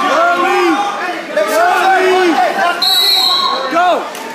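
Spectators and coaches shouting encouragement to wrestlers in a reverberant gym, many overlapping yells rising and falling in pitch. A brief, steady, high-pitched tone cuts in about three seconds in.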